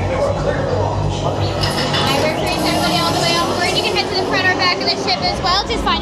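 People's voices and chatter among a crowd of guests, high and rapidly varying in pitch, over a low hum that fades out about a second and a half in.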